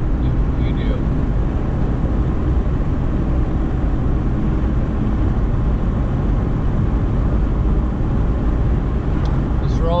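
Car driving at road speed: a steady hum of tyres and engine, with no change in pace.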